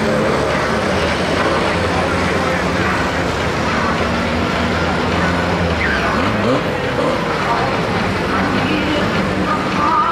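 Saloon stock car engines running at low speed over a dense din of voices, with the engine hum fading about six seconds in.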